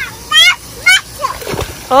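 Water splashing in a shallow inflatable kiddie pool as a toddler wades and steps through it, with two short high-pitched child's voice sounds about half a second and a second in.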